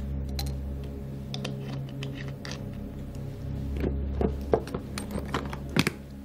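A few light clicks and taps of a small glass bottle and a handbag being handled, mostly in the second half, over a low steady music drone.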